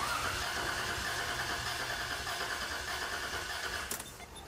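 1998 Toyota 4Runner's 3.4 L V6 (5VZ-FE) cranking over on the starter with the number-two spark plug removed, for a cooling-system pulse test of a suspected head gasket leak. The cranking stops near the end.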